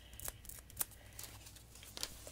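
Faint handling sounds: a few short, sharp clicks and ticks as a ruler and marking pen are worked against fabric, with soft fabric rustle.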